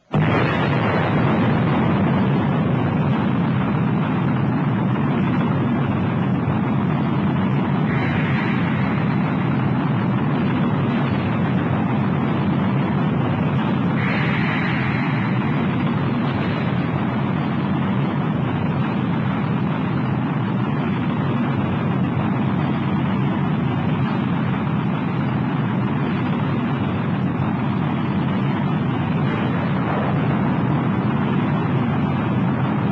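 Saturn V rocket's first-stage engines at liftoff: a loud, steady, full-range rumble that comes in suddenly at the start and holds without a break.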